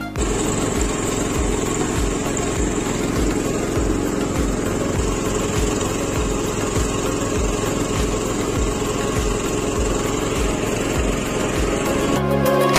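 The small engine of an MTZ Belarus walk-behind tractor running steadily under load as it pulls a rotary star-wheel cultivator through potato rows, with a regular low pulse about three times a second.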